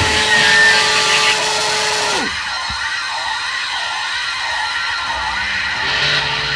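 A held, steady electric guitar feedback tone dips in pitch and cuts off about two seconds in. It gives way to a hissing noise passage with a regular wavering pulse, about two waves a second, and little bass, before the full band crashes back in at the end.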